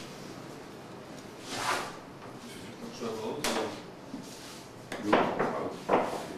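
Wooden bakery trays and boards being shifted and set down while dough pieces are laid out, three short scraping swishes, the last one the loudest, with faint voices in between.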